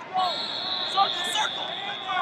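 Wrestling shoes squeaking on the mat in a run of short squeaks as the wrestlers scramble. A steady high-pitched tone sets in just after the start and holds.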